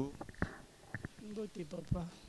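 Faint, indistinct speech: a few short, quiet murmured words after a loud greeting cuts off, with a small click about half a second in.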